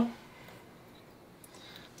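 A spoken word trails off, then quiet room tone with one faint tick about one and a half seconds in.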